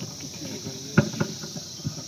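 Steady high-pitched chirring of insects, with a few short knocks, the loudest about a second in.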